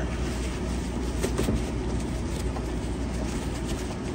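Steady low mechanical hum of room background noise, with a few faint clicks about a second and a half and two and a half seconds in.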